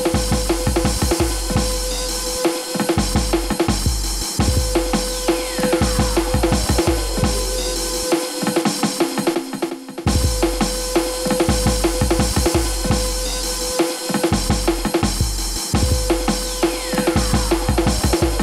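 Electronic music with a busy drum beat and deep bass. A falling pitch sweep runs twice, and near the middle the bass drops out for about two seconds before the beat comes back in.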